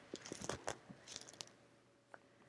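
Faint rustles and small clicks of fabric pieces being handled and lined up under a sewing machine's presser foot, a light scatter of them over the first second and a half. The machine itself is not running.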